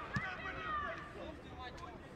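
Players' voices calling out on an outdoor football pitch during play, with one sharp thud just after the start.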